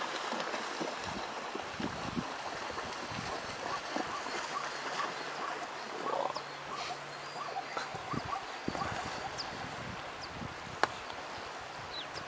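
Scattered short calls from a herd of animals over a steady background hiss, with a single sharp click near the end.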